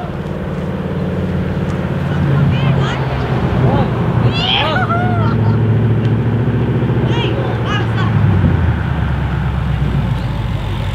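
Ford GT's V8 engine running steadily at low revs as the car creeps along, a low, even engine note.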